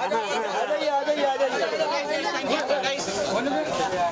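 Several people talking at once: the overlapping chatter of a small crowd, with no single voice clear.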